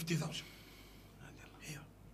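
Only speech: a man's voice trailing off at the end of a phrase, then a soft, breathy word over quiet studio room tone.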